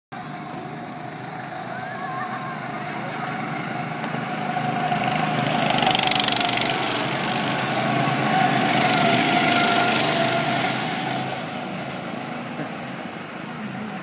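Several go-karts' small engines running as a group of karts drives past, growing louder, loudest for a few seconds in the middle, then fading as they move away.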